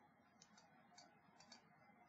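Near silence: room tone with a few faint computer mouse clicks, about half a second apart.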